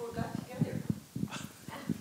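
Low, indistinct voices in a hall, with footsteps and light knocks and shuffles as a person walks up to the front.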